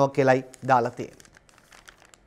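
Newspaper pages rustling and crinkling faintly as they are handled and turned, following a few words of a man's speech in the first half.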